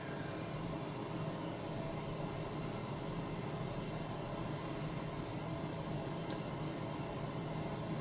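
Steady low hum of room background noise with a few faint steady tones, like a running fan or air-conditioning unit, and a faint tick about six seconds in.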